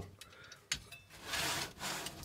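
A steel pedal box being handled and turned round on its base: a click, then a brief scraping rub of metal sliding across the surface.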